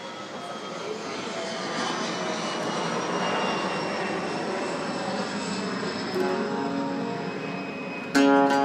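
An airplane passing overhead: a rushing engine noise that builds to a peak about three seconds in and then slowly fades, with a few steady whining tones that drift gently down in pitch.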